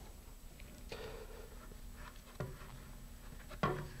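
Quiet, faint handling sounds of gloved fingertips rubbing along a wet epoxy-clay fillet at a fin root, smoothing it, with a few soft taps.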